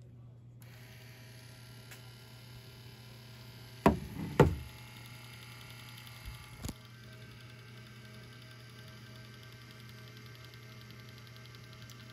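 Small DC motors of a homemade ROV's ballast system running faintly and steadily over a low hum, starting under a second in, as the test dive is started. Two sharp knocks come about four seconds in, and two smaller ones a couple of seconds later.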